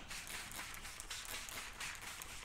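Faint, short hissing spritzes from a hand trigger spray bottle misting application solution onto window film, with quiet handling noise.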